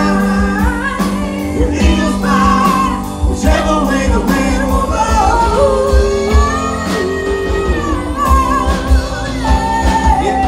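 Live rock band playing with a woman singing lead over drums, bass, and electric and acoustic guitars.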